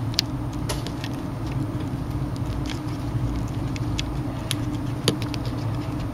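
Light clicks and taps of fingers handling a smartphone's opened frame and replacement screen, about eight scattered through, over a steady low hum.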